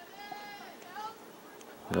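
A faint, distant high-pitched voice calling out, held for about half a second, then a shorter rising call about a second in.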